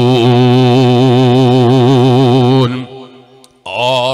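A man's voice chanting one long held note with a wavering vibrato through a microphone, breaking off about two and a half seconds in; after a short pause his voice starts again near the end.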